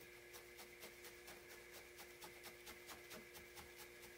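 Faint, even ticks of a felting needle stabbing into a cone of red wool on a burlap-covered felting pad, about four stabs a second, over a low steady hum.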